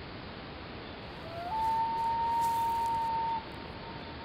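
A steady hiss with one long, high, level tone that slides up briefly, holds for about two seconds and then cuts off abruptly.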